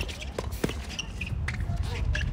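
Tennis ball struck by rackets and bouncing on a hard court during a doubles rally: a few sharp, separate hits over about two seconds, over a steady low rumble of wind on the microphone.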